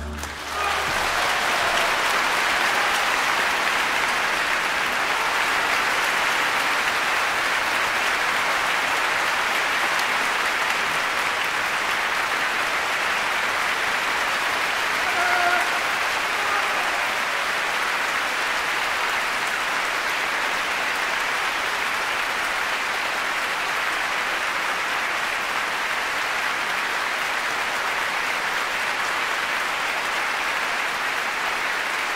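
Large concert-hall audience applauding steadily, a dense sustained ovation after the final chord of a violin concerto, with a brief swell about halfway through.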